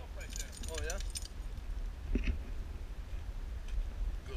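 A dog's metal collar hardware jingling for about a second near the start, as the wet dog moves along the bank. Steady wind rumble on the microphone runs underneath.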